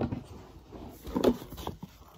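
Handling noise close to the phone's microphone: a few knocks and rubs as the phone is moved about.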